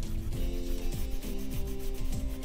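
Wax crayon rubbing back and forth on paper, colouring in a stripe, over background music.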